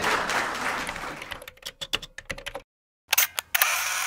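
Audience applauding, thinning to a few scattered claps and cutting off about two and a half seconds in. After a short silence, a logo sound effect of loud, sharp camera-shutter clicks.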